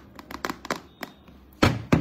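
Handling of a round plastic cosmetics jar: quick light taps and clicks of long fingernails on the lid, then a heavy thump near the end.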